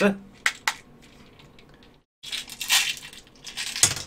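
Small metal fishing sinkers clicking and rattling as they are handled and dropped into the compartments of a 3D-printed plastic base. A few separate clicks, a brief dead gap about halfway, then a busier rattle with a sharp click near the end.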